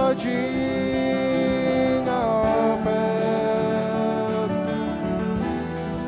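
Live worship band playing a slow song, with acoustic guitar strumming over held chords from the other instruments.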